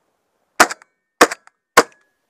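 Three shotgun shots fired in quick succession from a semi-automatic shotgun at a passing pigeon, each a sharp report a little over half a second after the last.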